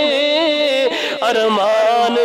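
A man singing a Punjabi naat in praise of Madina into a microphone, holding long wavering notes with slow ornamental turns.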